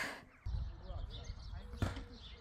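Low rumble of wind on a phone microphone outdoors, setting in about half a second in, with a single sharp knock near the end.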